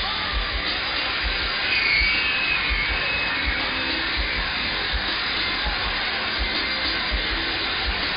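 A live rock concert heard from inside the audience: a loud, steady wash of crowd noise and amplified stage sound with no clear song under way.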